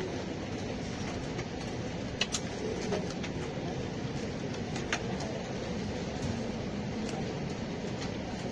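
Steady low background rumble and hiss, with a few brief high clicks or chirps: two close together about two seconds in and one near five seconds.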